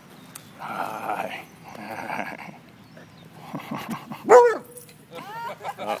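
Basset hounds barking: two rough bursts in the first two seconds, a single loud bark about four seconds in, then a few quick, shorter barks near the end.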